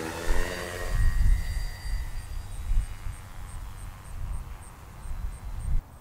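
Electric motor and propeller of an RC solar flying wing running as the plane is hand-launched. Its hum fades within the first second and a higher whine dies away over the next couple of seconds as the plane climbs off. A gusty low rumble of wind on the microphone runs throughout.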